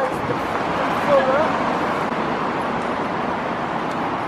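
Steady road traffic noise from cars passing on a city street, with a brief voice fragment about a second in.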